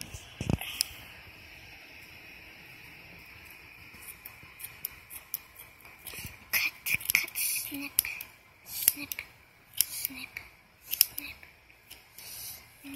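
Small scissors with red plastic handles snipping through a doll's hair: a string of short, sharp snips at uneven intervals through the second half.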